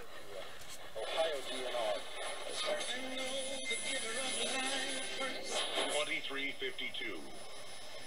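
AM broadcast stations coming through the small speaker of a Sangean PR-D6 portable radio as its dial is slowly tuned. Snatches of talk fade in and out between stations.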